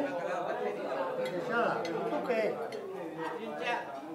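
Several people talking over each other during a meal, with occasional light clinks of cutlery and dishes.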